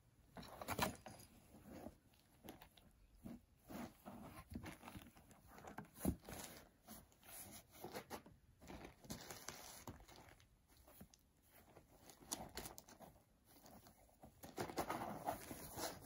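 A cat squeezing into a small cardboard box, its body scraping and rustling against the cardboard: faint, irregular scratches and crinkles.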